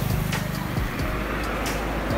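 A low, steady engine-like rumble of a motor vehicle running, under background music.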